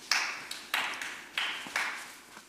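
A few slow, scattered hand claps in a reverberant hall, each starting sharply and dying away, about five in two seconds.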